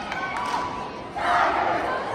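Crowd yelling and cheering, rising suddenly a little over a second in.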